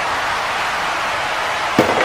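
Steady background noise, then a single sharp thud near the end as two wrestling action figures fall together onto the toy ring's mat.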